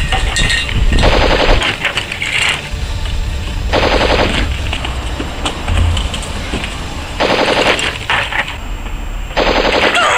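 Several short bursts of automatic machine-gun fire, each about half a second of rapid shots, with a low rumble between the bursts; a dubbed film sound effect.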